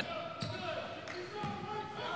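A basketball being dribbled on a hardwood court, with faint voices in the background.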